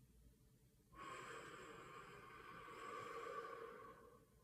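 A person's long, slow deep breath out through the mouth, starting about a second in and lasting about three seconds, growing a little louder before it ends.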